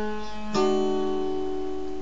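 Acoustic guitar with a capo fingerpicked: a note rings, then about half a second in a few strings are plucked together and left ringing, slowly fading.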